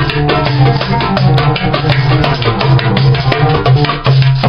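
Goblet drum (darbuka) played by hand in a fast, dense rhythm of sharp strokes, over a steady low drone.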